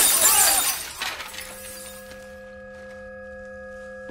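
Glass and debris from a fulminated mercury blast shattering and falling, dying away in the first second or two. A steady ringing of several held tones follows and runs on.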